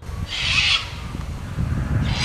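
Outdoor roadside ambience with a steady low rumble and one brief, high-pitched bird call about half a second in.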